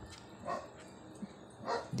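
A dog barking faintly: short, separate barks, one about half a second in and another near the end.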